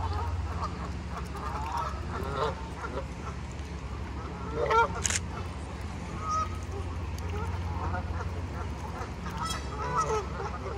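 A flock of Canada geese honking, many short calls overlapping, with one louder call a little before halfway and a brief sharp click just after it.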